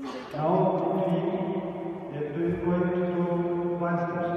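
Male chanting on long held pitches. It starts about half a second in and steps to a new pitch partway through.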